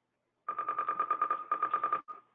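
Electronic telephone ringer trilling: a rapid warbling tone pulsing about ten times a second, starting about half a second in, with a short break partway through.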